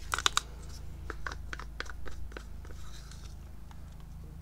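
Irregular small clicks and crackles, as of a wooden craft stick scooping and scraping acrylic paint in a cup, over a steady low hum.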